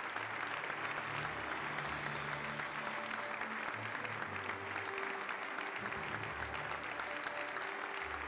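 Audience applauding steadily and continuously, with music playing underneath: held low bass notes that change every second or so.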